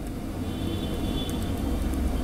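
A steady low rumble that grows a little louder toward the end, with a faint high thin tone in the middle.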